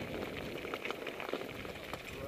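Mountain bike tyres rolling over loose, rocky gravel, giving a steady crackling crunch.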